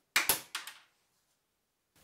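Half-kilogram Izod impact-tester pendulum hammer striking and breaking a 3D-printed PETG test bar: a sharp crack, then a fainter clack about half a second later.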